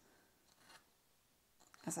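A seam ripper picking out basting thread from lyocell twill fabric: one faint, short scratchy rustle about half a second in, otherwise very quiet.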